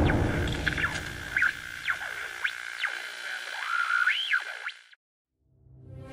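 Electronic music sting: a heavy low hit that fades out, with swooping, whistle-like gliding tones over it, stopping about five seconds in. Another music cue starts to swell just before the end.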